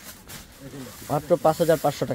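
A faint, hissing rustle of a sequined net saree's fabric being handled, followed by a voice speaking Bengali.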